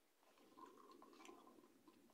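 Faint chewing of a mouthful of pot noodles with the mouth closed: soft wet mouth sounds with a few small clicks.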